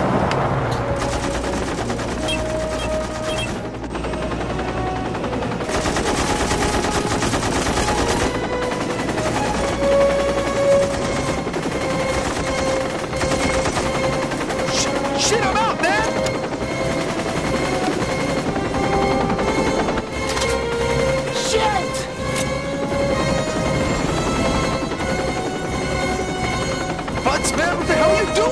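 Movie gun-battle soundtrack: sustained automatic gunfire with background music running under it.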